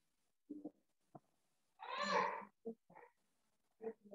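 Several short vocal sounds, the loudest a drawn-out call about two seconds in, with brief shorter sounds before and after it.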